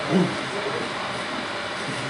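A brief bit of voice right at the start, then a steady rushing noise with no pitch or rhythm to it.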